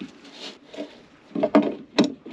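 Gloved hands rubbing and handling a plastic pipe fitting against the hollow side of a plastic drum, then a few sharp hollow knocks in quick succession about one and a half seconds in, as the fitting is worked into the hole cut in the drum.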